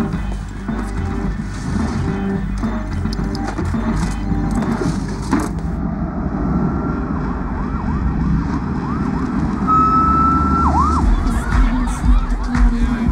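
A siren sounding in quick rising-and-falling sweeps from about halfway in, then holding one high note briefly before dropping away, over a film score. A heavier low beat comes in near the end.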